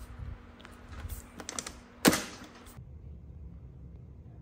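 Hotebike 48-volt lithium e-bike battery being seated onto its frame mount: light plastic clicks and rattles, then one sharp snap about two seconds in as it latches into place.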